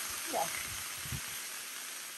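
Cubed chicken sizzling steadily on a hot Blackstone flat-top griddle, freshly splashed with soy sauce.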